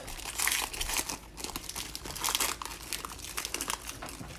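Foil wrapper of a Panini Chronicles football card pack being torn open and crinkled by hand: an irregular run of crinkles and rustles.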